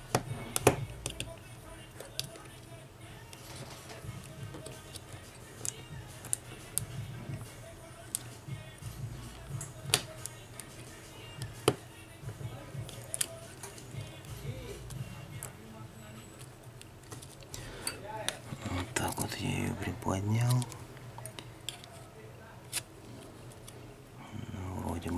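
Small sharp clicks and light scrapes as a thin metal probe pries at a smartphone's mainboard, its clips and the metal frame around it. The clicks come irregularly, a few much sharper than the rest, and there is a short stretch of low voice near the end.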